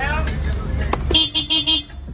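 A car horn honks once for just under a second, about a second in, over voices and the steady bass beat of a car stereo playing music.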